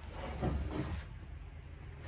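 Handling noise of a small 12-volt sealed lead-acid battery being slid into a plastic feeder housing: a soft scrape and shuffle in the first second, over a low steady hum.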